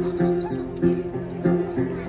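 Đàn tính (tính tẩu) long-necked lutes plucked in a steady, repeating rhythmic pattern, the accompaniment of a Then ritual song.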